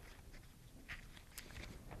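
Near silence with a few faint, brief rustles and ticks of paper sheets being handled and shuffled.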